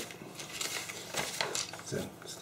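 A sheet of paper rustling and sliding over a drawing on its board, with a few short scraping ticks.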